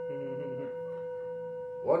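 A steady held tone at one pitch with fainter overtones above it, not fading. A voice speaks softly for a moment just after it starts, and speech begins at the very end.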